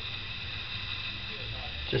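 Steady background hum and hiss of room tone, with no distinct sound event; a word of speech begins near the end.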